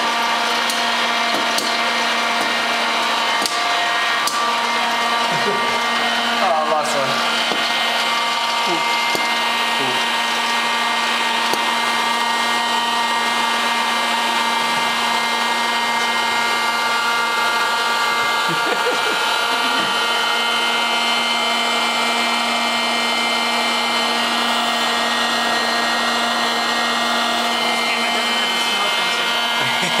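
Popcorn vending machine running mid-cycle: a steady, unchanging motor and fan hum, with a strong low tone under a whine of many higher tones.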